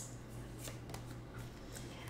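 Faint rustling and sliding of tarot cards as one is drawn off the top of the deck, over a low steady hum.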